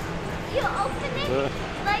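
Short snatches of people talking over the steady background noise of a busy indoor public space.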